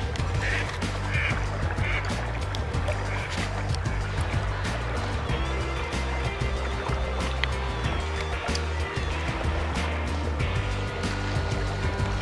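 Background music with a bass line that moves in steady held notes.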